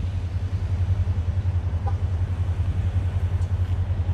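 Mercedes-Benz CL550's V8 engine idling: a deep, steady rumble with an even pulse.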